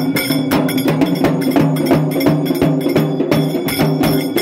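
Festival procession percussion: a dhol drum and clanging metal percussion beaten in a fast, driving rhythm over a steady low sustained tone.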